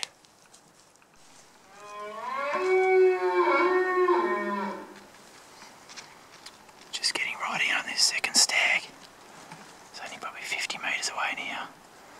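Bull wapiti (elk) bugling once, about two seconds in: a call of about three seconds that glides up and then holds steady.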